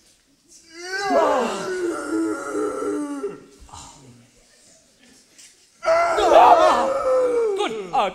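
A man's voice groaning in two long, wordless moans, the first starting about a second in and the second about six seconds in. This is the Frankenstein's-monster character groaning as he sits up on the lab table.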